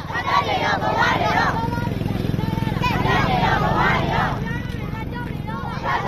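A crowd of men, women and children chanting protest slogans together in waves of shouted voices. A low steady engine runs underneath.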